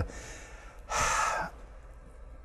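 A man's audible breath, a single short breathy rush lasting about half a second near the middle, over low room tone.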